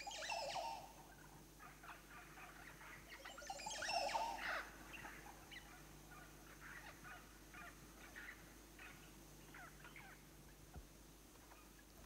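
Oropendolas calling at their nesting colony: two louder calls, one right at the start and one about four seconds in, among many short, fainter calls. The louder calls fit the big male's bowing display song.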